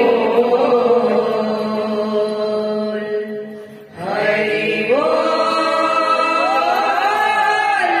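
Kirtan singers chanting a devotional line in long held notes. The singing breaks off briefly just before the halfway point, then several voices come back in together, holding and sliding between notes.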